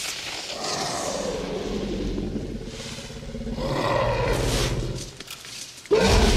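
A Tyrannosaurus rex roaring in a film soundtrack: two long roars, the second beginning about three and a half seconds in.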